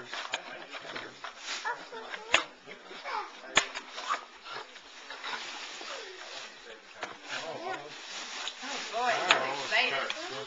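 Indistinct chatter of several adults and children in a room, with a few sharp clicks and knocks as a cardboard toy box is handled.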